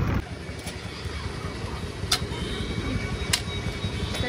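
Outdoor street background: a steady low rumble of traffic, with two sharp clicks about two and three seconds in.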